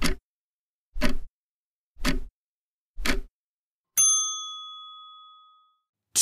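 Countdown timer sound effect: a clock ticking once a second, four ticks, then a single bell ding about four seconds in that rings out and fades over about two seconds, signalling that the time to answer is up.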